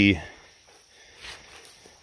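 A man's voice trailing off at the very start, then a pause holding only faint outdoor background and one soft rustle about a second in.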